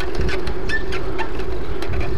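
Riding noise from a bicycle-mounted action camera: a fluctuating low rumble of wind and tyres on asphalt, under a steady hum, with small scattered rattling clicks.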